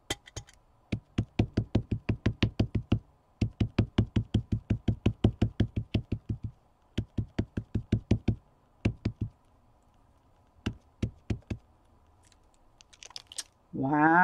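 A rubber stamp knocked rapidly against a card on a tabletop, about seven light knocks a second in several runs with short pauses between. The stamp is being pressed down to print a numeral in black ink.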